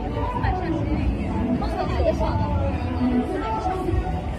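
Indistinct chatter of passing pedestrians, several voices overlapping, over a steady low street rumble.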